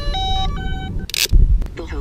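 A short electronic jingle of beeping tones stepping up and down in pitch, like a game notification chime, followed about a second in by a sharp hiss and a heavy thump, the loudest moment; a voice begins near the end.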